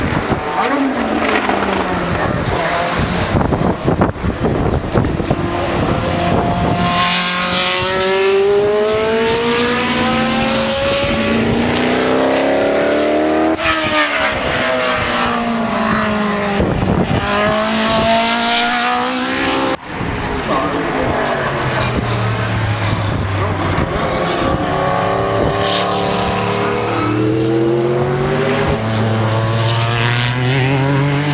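Group C sports-prototype racing cars going past one after another at speed. Each engine note rises in steps through the gears, then drops in pitch as the car goes by.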